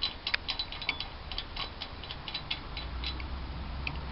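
Light, irregular metallic clicks, about four or five a second, as the camshaft sprocket bolt on a Toyota 1MZ V6 is undone.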